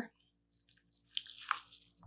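Near silence, then faint short crackles and creaks from about a second in, as a flat chisel prises the thin carved mahogany piece up off the double-sided tape holding it to its backer board.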